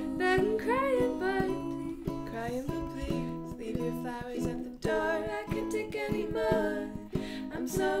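Ukulele and acoustic guitar strummed together in a steady rhythm, with women singing long notes that bend and slide in pitch over them.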